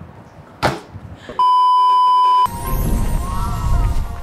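A steady, loud beep tone lasting about a second, an edited-in censor bleep, after a short sharp sound. Then film-soundtrack music with a deep rumble comes in.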